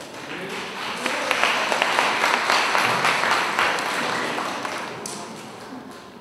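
Audience applause after a cello piece ends, swelling over the first two seconds and dying away near the end.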